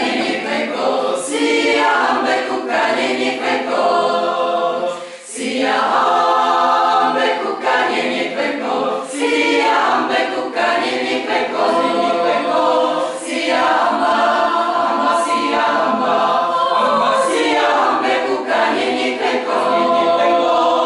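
A mixed choir of women's and men's voices singing a cappella, with a short pause for breath between phrases about five seconds in.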